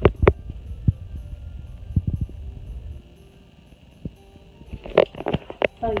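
Rumbling handling noise and a few light knocks as a phone is moved about over an open cardboard box, easing into a quieter stretch with faint steady tones in the background.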